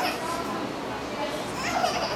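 Faint, distant voices in a large hall, among them a child's, with no clear speech near the microphone.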